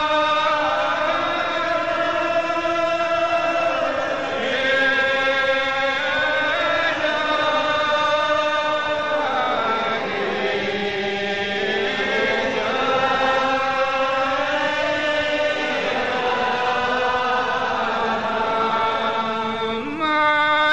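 Congregation singing a Gaelic psalm unaccompanied, in a slow, drawn-out style with long-held notes that glide from one pitch to the next, heard through an old cassette recording.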